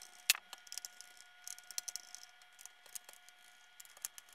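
Screwdriver turning out the screws of a Roomba 530's plastic top cover: one sharp click about a third of a second in, then scattered faint ticks and clicks.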